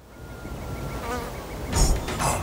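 Cartoon fly buzzing sound effect that grows louder, with a brief wobbling tone about a second in. Near the end a loud hit marks the start of a rhythmic beat.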